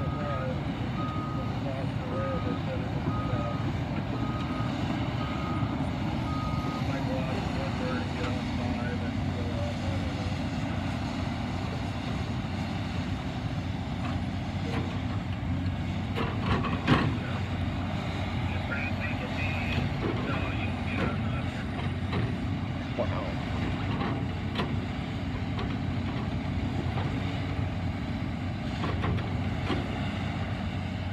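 Caterpillar 568 tracked forest machine's diesel engine running steadily as it travels, its backup alarm beeping steadily for the first seven seconds or so. Scattered clanks, with one sharp knock a little past halfway that is the loudest sound.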